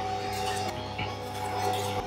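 Electric mixer running steadily, whipping egg whites with sugar, its motor giving a constant hum and whine. A light knock sounds about a second in.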